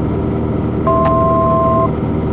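Cessna 182's piston engine and propeller droning steadily in cruise, heard from inside the cabin. About a second in, a steady two-pitch electronic tone sounds for about a second over the drone, with a short click.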